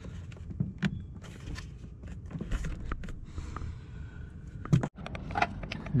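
Scattered light clicks and rustles of hard plastic being handled: a car's under-hood fuse box cover being picked up and moved about, with a cluster of sharper clicks near the end.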